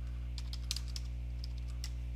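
Computer keyboard typing: a few irregular, separate keystrokes as an email address is entered, over a steady low hum.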